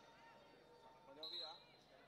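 Faint, distant voices of players on a football pitch, near silence overall, with one brief louder call carrying a short high tone a little over a second in.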